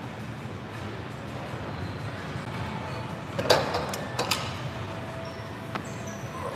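Loaded barbell set back into the metal hooks of an incline bench press rack: one loud metallic clank about three and a half seconds in, then two smaller clanks, over the steady noise of the gym.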